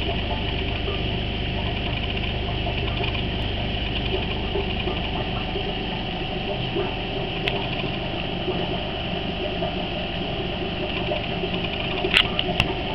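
Steady electric buzzing hum of an aquarium air pump running the sponge filter, with a faint click about halfway through.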